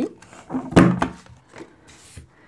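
A handheld corner-rounder punch snapping shut through a cardstock tab: one sharp plastic clunk about three quarters of a second in, with lighter paper handling around it.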